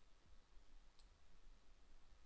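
Near silence: faint room tone with a low hum, and one faint click about a second in.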